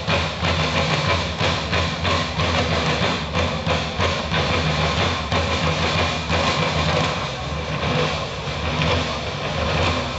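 Military band music for a medieval flag-throwing show, heard from far back in an open-air crowd: drums beating a steady, rapid march rhythm under long held low notes.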